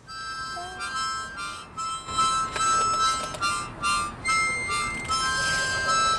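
Several harmonicas played together in a simple tune of held notes, with more than one reed sounding at a time, the notes changing every half second or so.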